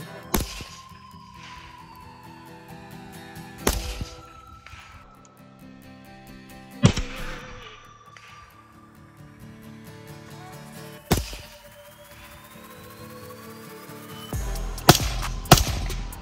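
Background music, with six single shots from a suppressed AR-15 rifle, three to four seconds apart at first and the last two close together near the end.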